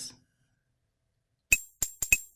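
Silence for over a second, then two short, sharp clicks about a third of a second apart near the end, each with a faint high ring: pop-in sound effects of an animated title card as its text boxes appear.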